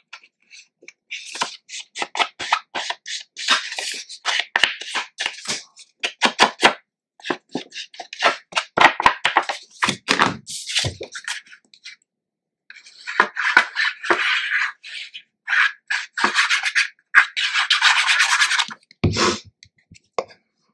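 An ink pad rubbed along the edges of a paper mat: many short dry scraping strokes, a brief pause about twelve seconds in, then longer continuous rubs, and a low knock near the end.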